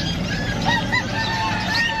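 A rooster crowing: two short notes, then one long held note that falls slightly at its end. Fainter high bird chirps are heard under it.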